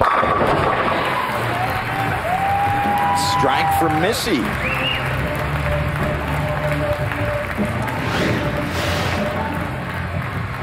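A bowling ball crashes into the pins for a strike. Crowd cheering and applause follow at once and carry on, with loud whistles rising and falling a few seconds in.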